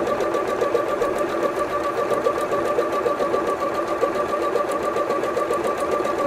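Bernette B38 computerized sewing machine stitching a satin-stitch decorative pattern at medium speed. It runs steadily, with a constant motor whine over the quick, even strokes of the needle.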